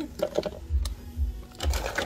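Frozen fruit pieces (blueberries, mango, strawberry) tipped from a small cup dropping into a plastic blender cup: scattered clicks and knocks, with a cluster of them near the end.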